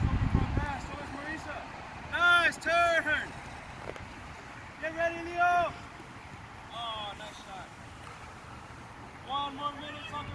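Children's high-pitched voices shouting and calling out on an open field, in four short bursts with rising and falling pitch. Wind buffets the microphone for the first half-second or so.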